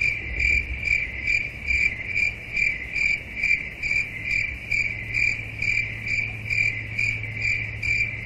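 Cricket chirping sound effect: a steady, even chirp repeating about twice a second, starting and stopping abruptly, played as the 'crickets' gag for an awkward silence.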